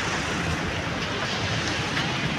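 Steady wind rumbling on the microphone, mixed with passing street traffic.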